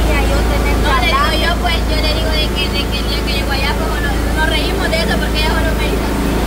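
A steady low rumble, with many quick, high chirping sounds over it and voices in the background.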